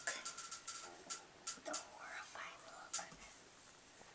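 Faint whispering, with soft short rustles from hair being braided tightly by hand.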